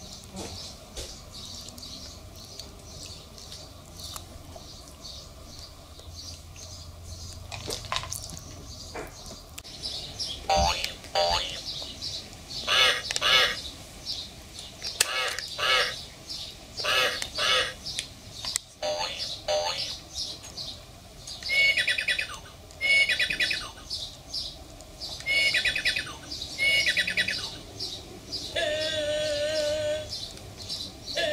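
Wild birds chirping and calling in short repeated bursts, starting about ten seconds in and going on through the rest.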